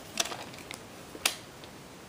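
Handling noise from plastic VHS tapes being picked up: a few light clicks, then one sharper click just after a second in.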